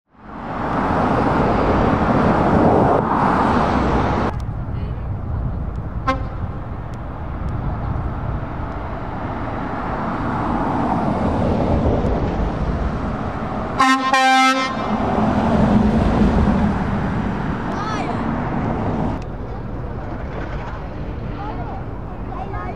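Vans driving past on a road: steady engine and tyre noise, with a vehicle horn giving two short toots about two-thirds of the way through.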